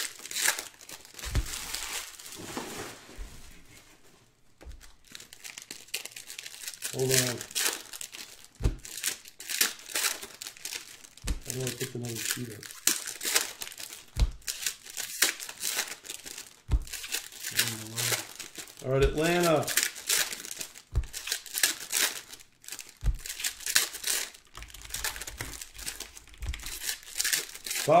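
Foil trading-card packs crinkling and being torn open by hand, a busy run of sharp crackles and rips.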